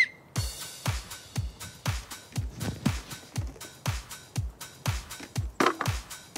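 A short, shrill referee's whistle blast at the very start, the loudest sound here. Then upbeat electronic dance music with a thumping kick drum about twice a second.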